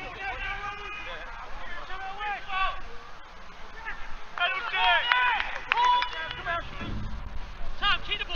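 Footballers shouting to each other across an open pitch, distant calls that are too far off to make out, with louder, higher-pitched shouts about halfway through.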